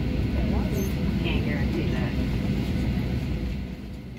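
Steady low rumble of an airliner cabin's air-conditioning and ventilation while the plane sits at the gate, under faint passenger chatter. The rumble eases near the end.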